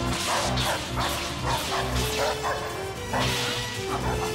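Film action music with a pulsing bass beat, over repeated swishes and clashes of laser-sword sound effects as the blades swing.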